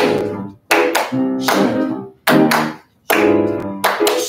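Piano accompaniment playing loud, sharp chord stabs in a steady rhythm, about one every three-quarters of a second, each ringing briefly before the next.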